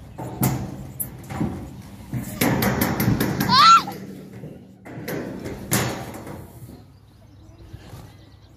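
Knocks and thumps of children clambering on a wooden playground climbing frame, with a quick run of clicks a few seconds in, and a child's brief high squeal about halfway through.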